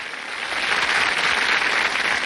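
Studio audience applauding, growing louder about half a second in.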